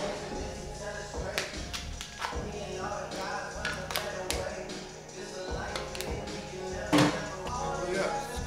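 Music playing under indistinct voices, with scattered sharp taps and knocks and one louder burst about seven seconds in.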